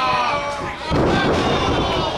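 A drawn-out shout, then about a second in a loud, heavy thud as two wrestlers land hard on the ring canvas from an upside-down lift, with the ring boards ringing on after it.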